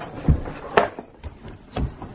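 Handling noise: three short knocks and rustles, the loudest just under a second in.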